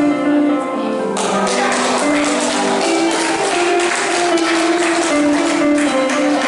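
Live Hungarian folk dance music from a small band: a held, sustained melody joined about a second in by a steady, tapping percussive beat.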